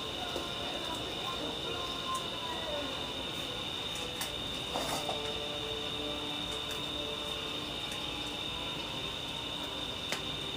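A steady high-pitched drone, with a couple of light knocks about four to five seconds in.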